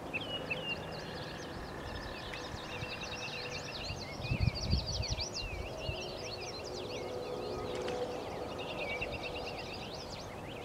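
Several songbirds chirping and singing throughout over a steady low hiss, with a brief low rumble about four seconds in.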